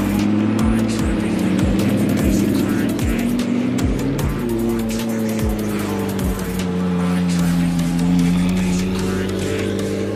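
Supercar engines running as the cars move slowly across a parking lot, the engine note falling and rising through the second half. Background music with a steady beat plays over it.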